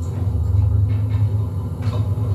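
A steady low rumble, with a faint short sound near the end.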